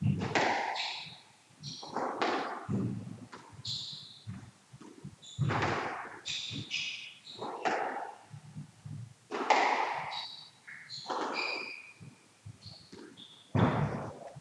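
Squash rally: the hard rubber ball struck by rackets and smacking off the court walls, sharp hits coming irregularly about once a second, with athletic shoes squeaking briefly on the wooden court floor between shots.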